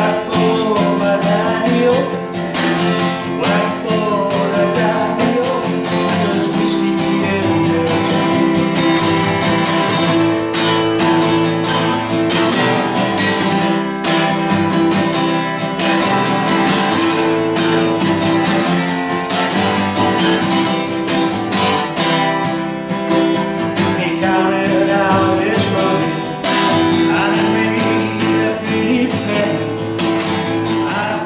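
Acoustic guitar strummed in a steady rhythm, with a man singing along to it at the start and again near the end.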